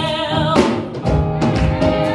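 Gospel music: a woman singing over instrumental accompaniment, with a drum beat hitting about once a second.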